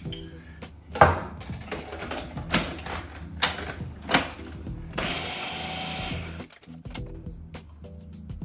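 Countertop blender running for about a second and a half, starting about five seconds in and stopping suddenly, blending a protein drink with a splash of whiskey added. Before it, four sharp knocks of a glass bottle and the blender jar being handled on the stone counter.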